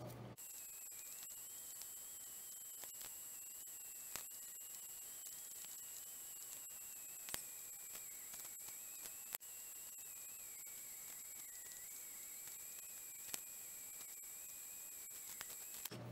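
Faint steady hiss with a thin, slowly wavering high whine and a few scattered soft clicks.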